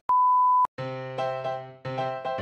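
A steady, high test-tone beep, the kind played with a colour-bars test card, held for about half a second and cut off. After a short gap, bright background music with struck, ringing notes begins.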